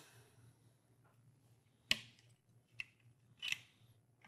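Small handling sounds of a sample cuvette being readied and set into a turbidity meter: a sharp click about two seconds in, a faint tick, then a brief scrape near the end.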